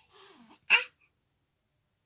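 A toddler's brief nonverbal vocal sounds: a faint breathy sound sliding down in pitch, then one short, sharp, louder burst of breath.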